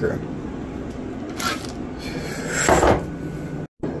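Glass mason jars of sterilized rice being handled and set down on a counter: two short rubbing scrapes over a steady background hum.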